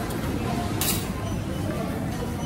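Goods being handled in a plastic bin, with one short sharp handling noise a little before the middle, over a steady low store hum.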